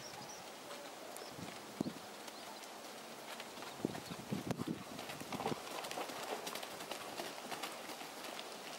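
Hoofbeats of a bay horse cantering, then trotting, on a loose outdoor arena surface: dull thuds, the loudest cluster a little past the middle.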